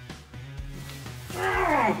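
Background music with a steady beat. Near the end comes a loud cry that falls sharply in pitch over about half a second.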